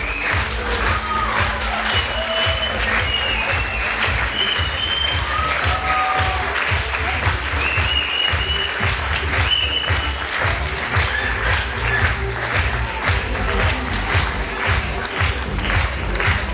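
Theatre audience applauding continuously during the curtain call, over music with a steady low beat.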